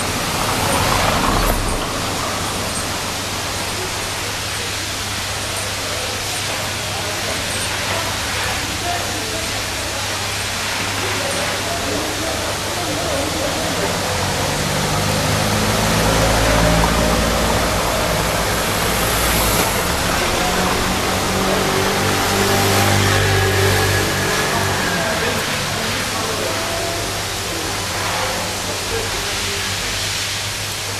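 Street traffic on cobblestones: a car passes close by a second or two in, then a van's engine runs close by through the middle, loudest around halfway, over a steady street hum.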